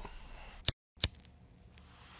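Two sharp clicks about a third of a second apart with dead silence between them, then a faint hiss: audio edit splices at a cut between clips.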